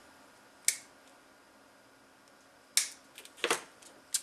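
Sharp clicks of small hobby side cutters being worked and handled: one crisp snip a little under a second in, then a quick cluster of clicks from about three seconds on as the cutters are handled and set down.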